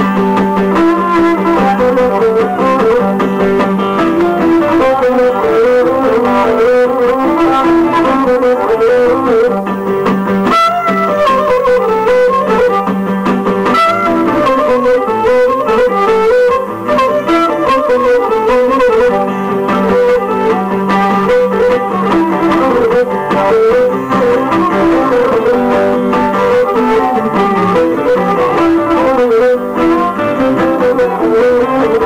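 Cretan lyra bowing a wavering, ornamented melody over strummed acoustic guitar accompaniment: live, unamplified-sounding Cretan folk music, purely instrumental.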